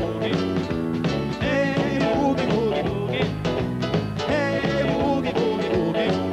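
Live rock band, electric guitar, bass guitar and drums, playing an upbeat rock-and-roll instrumental passage with a steady beat.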